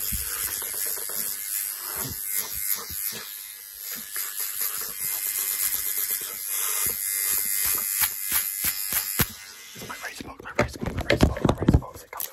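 Close-miked ASMR hand sounds: gloved hands rapidly scratching, rubbing and tapping an object against the microphone, making a steady hiss dotted with quick clicks. Near the end come louder, rougher rubbing bursts.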